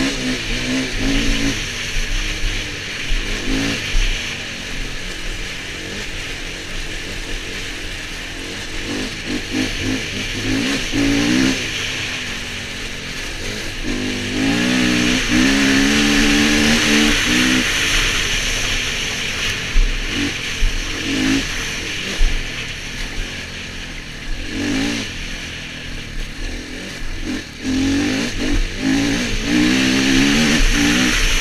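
Dirt bike engine running under way, its pitch rising and falling repeatedly as the throttle is opened and closed, with loudest surges about ten, fifteen and twenty-eight seconds in. Steady wind noise on the helmet-mounted microphone runs under it.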